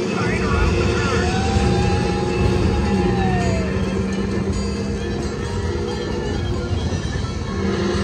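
Radiator Springs Racers ride car running fast along its track: a loud, steady rumble with wind noise, mixed with the ride's music and voices calling out over it.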